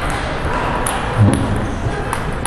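Sporadic sharp clicks of table tennis balls hitting tables and paddles, a couple of them about a second in, over a steady murmur of voices in a large gymnasium.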